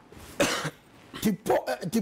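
A single short cough about half a second in, followed by a man's voice speaking.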